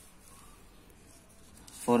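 Faint rustle of a sheet of paper being slid and handled on a desk. A man starts speaking near the end.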